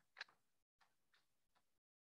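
A few faint, short clicks: a sharper one just after the start, then three fainter ones spread over the next second and a half.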